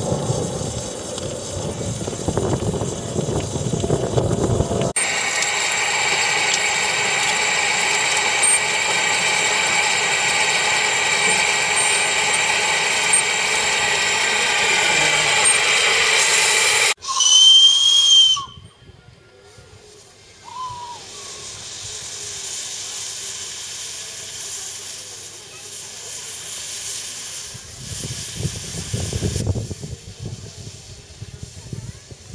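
Coal-fired miniature live-steam locomotive. Its firebox fire rumbles, then steam hisses steadily for about twelve seconds. A loud, short steam-whistle toot follows, about a second and a half long, then a quieter stretch and a low rumble near the end.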